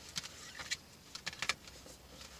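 Oracle cards being shuffled and handled by hand: a string of short, irregular clicks and flicks, the sharpest about one and a half seconds in.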